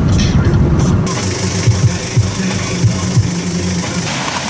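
A car driving at road speed, heard from inside the cabin: steady engine and road noise with a hiss of tyres and wind that grows about a second in.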